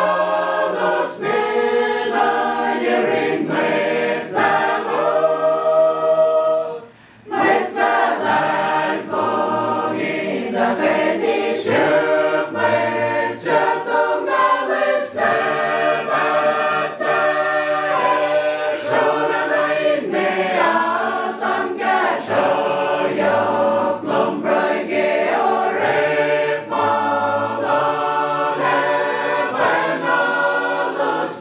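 A church gospel choir singing unaccompanied, several voices together, with a short break for breath about seven seconds in.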